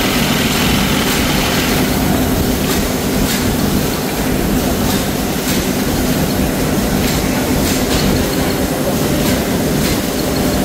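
Steady, loud mechanical noise: a continuous rumble with a low hum and occasional faint clicks.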